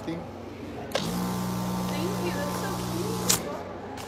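Electric balloon inflator running for about two seconds, filling a white 350 twisting balloon. It is a steady hum with a rush of air, starting and cutting off abruptly.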